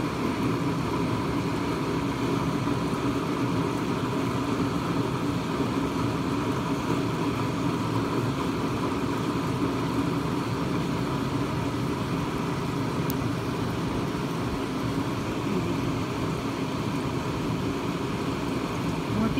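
A steady low hum with hiss, like a running machine or fan.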